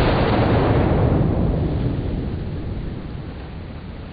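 A .44 Magnum revolver shot slowed down to a fraction of its speed: one long, low boom that starts suddenly and fades slowly over about four seconds.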